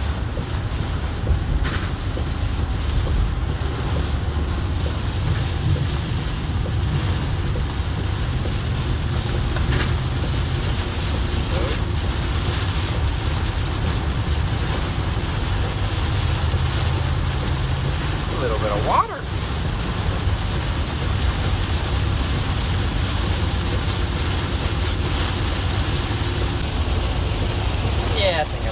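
Cargo van driving through heavy rain, heard from inside the cab: a steady loud hiss of rain on the glass and body and tyre spray, over a low road-and-engine rumble.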